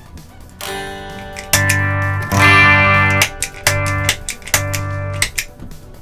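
Electric guitar playing a few ringing chords through an amp, its signal passing through an unpowered, switched-off overdrive pedal. The guitar comes through, which shows the pedal has a passive bypass.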